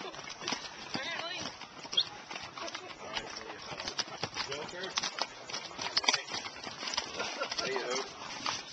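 Hooves of a mule train walking on the trail: irregular clopping knocks from several mules, with people's voices talking at times.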